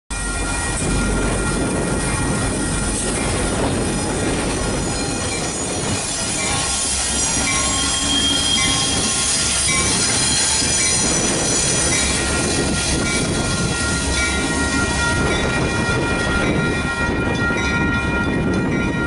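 A Metra MP36PH-3S diesel-electric locomotive running light past at low speed. The diesel engine's rumble is heaviest as it passes, under a steady high squeal of several pitches from its wheels on the curving track.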